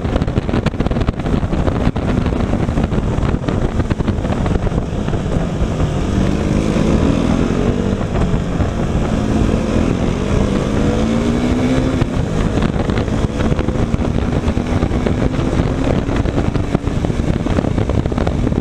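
Motorcycle riding on the road, its engine note heard under heavy wind rush on the camera microphone. Around the middle the engine pitch slides up and down as the speed changes, then settles to a steadier note.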